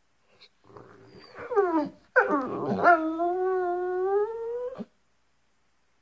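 A dog howling: a low grumble, then a whine that falls steeply in pitch, then one long howl that drops and holds for about two seconds, rising a little near the end before it breaks off.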